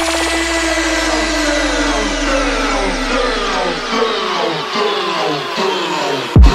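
Dubstep build-up: a held sub-bass note under many falling synth sweeps and noise. The bass fades out about two-thirds of the way through.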